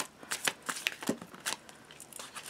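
A deck of oracle cards being shuffled and handled, heard as an irregular run of soft card snaps and slides.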